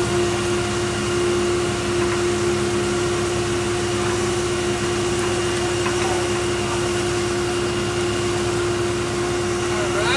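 An engine idling steadily: a constant drone with a fixed hum note that does not change.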